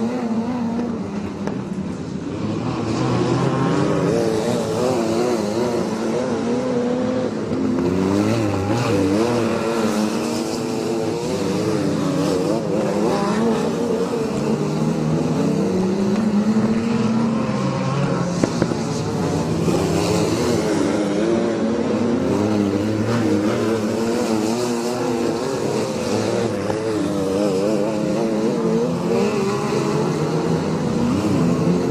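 Several wingless sprint cars racing on a dirt oval, their engine notes overlapping and rising and falling in pitch as the drivers lift and get back on the throttle through the turns.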